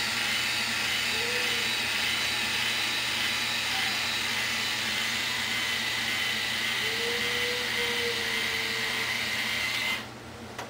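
InStyler rotating hot iron running: its motor whirs steadily with a thin high whine as the heated barrel spins through the hair, then cuts off suddenly at the very end.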